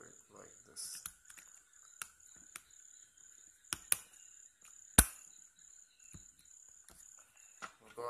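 Plastic back cover of a DZ09 smartwatch being pressed and snapped onto the case: a series of small clicks, with the loudest snap about five seconds in as it seats.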